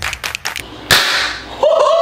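Edited title-card sound effects: a quick run of sharp clicks, then a loud whip-like crack about a second in. Near the end a voice starts a long, high call that arches and falls in pitch.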